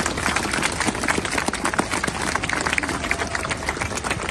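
A crowd applauding: many hands clapping steadily.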